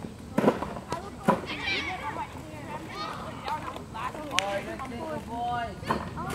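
A few sharp knocks in the first second and a half, the loudest the crack of a cricket bat hitting the ball, then players' voices calling across the field, with one long call near the end.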